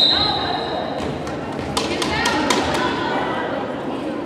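Referee's whistle, a steady high tone that cuts off about a second in, then a quick run of sharp thuds and slaps from play on the hardwood volleyball court. Voices echo throughout in the large gym.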